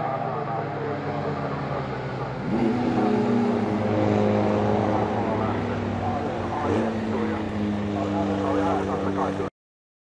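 Historic open-wheel race cars (Formula Vee and Formula B) running past at high revs, the engine note rising and growing louder about two and a half seconds in and then holding. The sound cuts off suddenly near the end.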